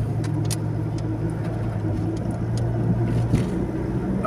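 Steady low hum of a car's engine and tyres on the road, heard from inside the cabin while driving.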